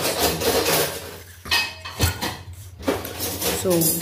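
Dishes and cutlery clattering irregularly as washed kitchenware is handled and put away at a sink.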